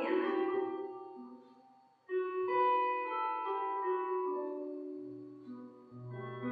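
Slow piano music: held notes ring and die away almost to nothing about two seconds in, then a new phrase of held notes begins and fades in turn.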